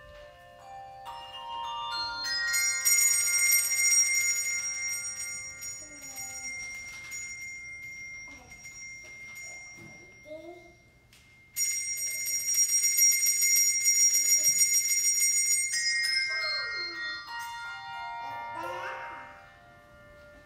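Handbell choir playing: bells enter one after another in a rising run and build to a held chord. The sound breaks off briefly about eleven seconds in, returns with a sudden loud chord, then the bells fall away in a descending run.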